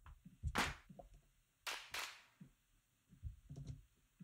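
Faint clicks from a computer keyboard and mouse, with two short soft hisses about half a second and two seconds in.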